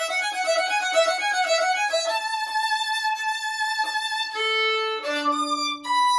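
Solo violin played with the bow: a quick run of notes for about two seconds, then longer held notes, settling on a low held note near the end.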